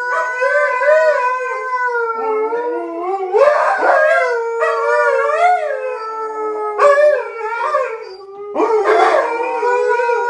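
Alaskan Malamutes howling together at the TV: one long held note with a second voice warbling up and down over it. The howls break and restart with a fresh, rising note about three and a half, seven and nine seconds in.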